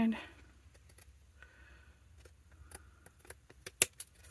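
Scissors cutting through cardstock: a scatter of faint short snips, with a sharper pair of snips near the end.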